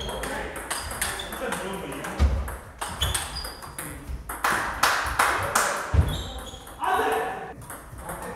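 Table tennis balls clicking repeatedly and irregularly off bats and table tops, with voices in the background. Two low thumps land about two seconds in and near six seconds.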